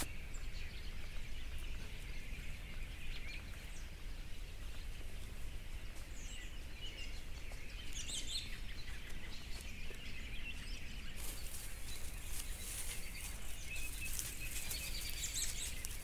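Wild birds chirping and calling, faint and scattered, with the calls thickest around the middle, over a low steady rumble.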